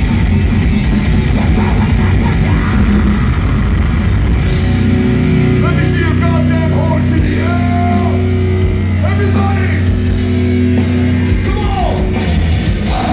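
Death metal band playing live through a club PA: fast, dense drumming and distorted guitar riffing, giving way about four and a half seconds in to held, ringing low chords with higher sliding tones over them.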